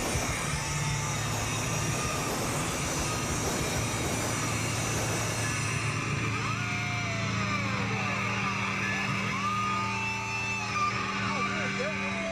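Amplified electric guitars ringing out and humming through the stage PA as a live rock song stops. From about halfway through, audience members near the camcorder shout and whoop.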